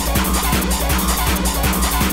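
Hard electronic dance music from a DJ mix: a fast, steady kick drum on every beat under a continuous bass and bright cymbal and synth layers.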